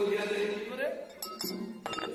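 A man's voice holding a melodic, chanted sermon phrase that ends about a second in, followed by a few sharp clicks.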